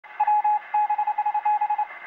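Morse-code-style beeping: one steady mid-pitched tone keyed on and off in a quick run of long and short beeps.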